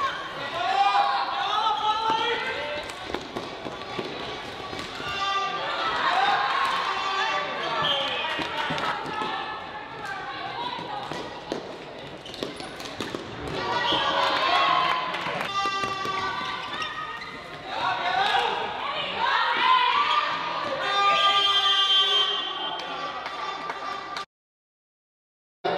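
Live floorball match sound in a sports hall: voices of players and spectators calling out, with frequent sharp clacks of sticks and the plastic ball on the court floor.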